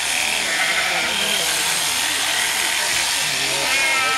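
Sheep bleating, with a clear bleat near the end, over the steady buzz of electric sheep-shearing clippers.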